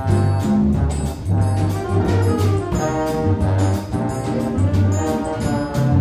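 Jazz big band playing, with a trombone carrying the melody over bass and drums keeping a steady rhythm.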